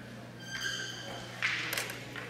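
A crokinole shot: a short clatter with sharp clicks of wooden discs striking about one and a half seconds in, preceded by a faint high steady ringing tone, over a low steady electrical hum.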